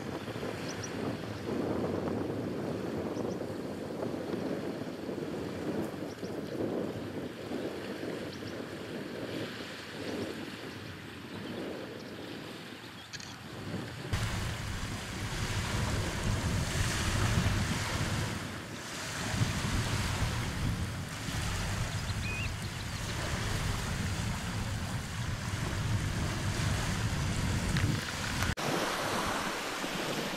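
Small waves washing onto a sandy shore. About halfway through the sound changes to choppier open sea with wind buffeting the microphone, a low rumble under the wash of the water.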